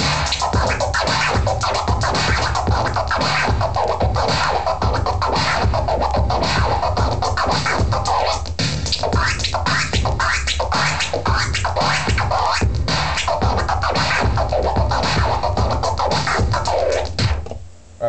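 Turntable scratching over a hip hop beat: a mirrored flare combo of double clicks and a one click. The record is pushed forward and back while the crossfader clicks the sound in and out in quick chops. The beat and scratching stop just before the end.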